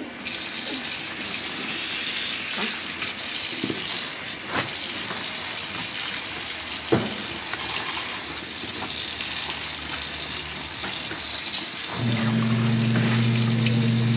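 Warm tap water running steadily into a stainless steel sink and splashing over a soaked wool bundle as hands squeeze it, with a few faint clicks. A steady low hum comes in about two seconds before the end.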